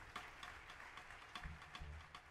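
A jazz quintet playing very softly: a steady run of light ticks, with two short, faint low double bass notes in the second half.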